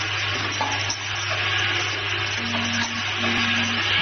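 Automatic water-bottle capping line running: a steady low hum under a constant hiss. Two short low tones sound in the second half.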